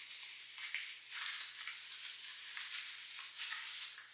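Soft, uneven crinkling and rustling of small product packaging being handled and opened.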